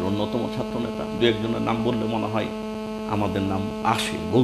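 Steady electrical mains hum, a set of fixed low tones running under a man's talking.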